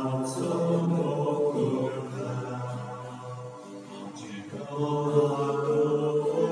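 Church hymn or liturgical chant, sung in long held notes in two phrases, with a short break about three and a half seconds in.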